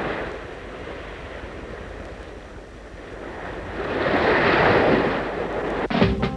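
Ocean surf: a steady wash of waves that swells as a wave breaks about four seconds in, then eases.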